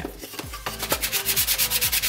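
An abrasive sanding sponge rubbed quickly back and forth over a cardboard drink coaster, in fast regular strokes starting about half a second in. It is scuffing off loose film and part of the varnish so that primer will hold.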